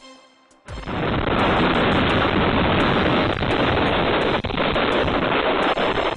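Strong wind gusting: a loud, rough rushing noise that starts suddenly about a second in and holds on.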